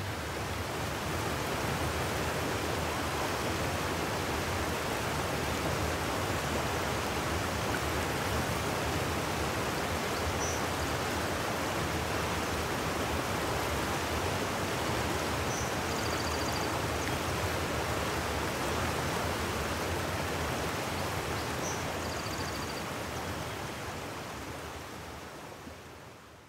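Fast-flowing creek water rushing steadily, fading out near the end.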